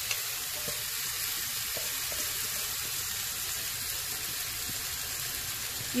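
Rinsed, still-wet rice frying in hot olive oil in a pan, a steady sizzle.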